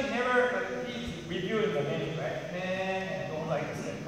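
A man's voice talking; the words are not made out.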